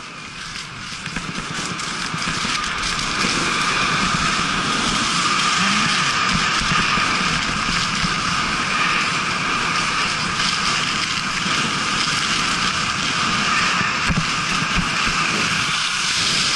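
Rushing air and the hiss of skis on snow during a fast downhill ski run, with wind on the microphone. It builds over the first few seconds as speed picks up, then holds steady.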